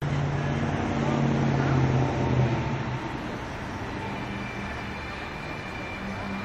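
Street traffic noise with indistinct voices: a vehicle engine hums low and steady for the first two or three seconds, then fades into a steadier, quieter wash of traffic.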